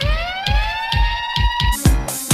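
House music in a short breakdown: the kick drum carries on about twice a second while the hi-hats drop out and a siren-like tone glides upward and then holds. Near the end the full beat with hi-hats comes back in.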